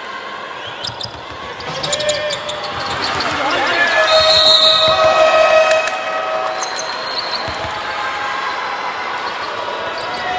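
Live basketball game sound in an arena: a ball bouncing on the hardwood court about a second in, over a steady crowd din. Voices from the crowd swell between about four and six seconds in, with a brief high tone.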